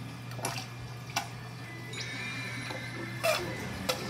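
Four sharp plastic clicks and knocks, the loudest about three seconds in, from a clear plastic tube being handled against an acrylic fish-dip container. Under them runs the steady low hum of aquarium equipment.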